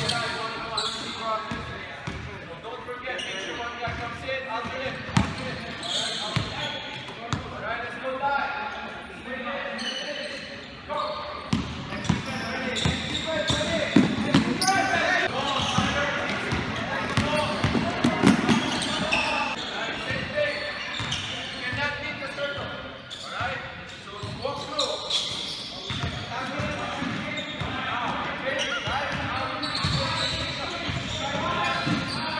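Basketballs bouncing on a hardwood court in a large gym, with the voices and calls of many players around them.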